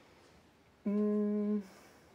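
A person's short hummed "hmm", held on one steady pitch for under a second, about a second in, the pause of someone thinking before answering a question.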